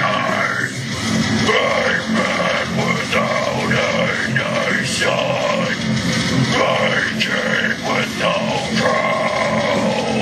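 Deathcore vocals: a man growling and screaming continuously into a hand-cupped microphone, over a loud heavy-metal backing track.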